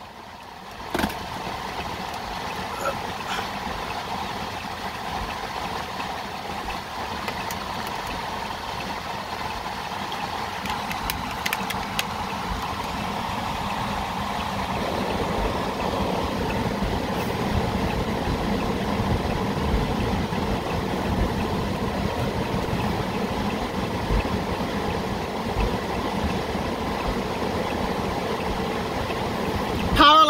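Steady rain and a car's engine running, heard from inside the car's cabin. A sharp knock comes about a second in, and the sound grows fuller about halfway through.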